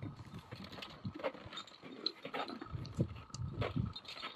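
Irregular knocks, clicks and scrapes of a roped climber's crampons, ice tools and gear on snow and rock, with a few heavier thuds near the end.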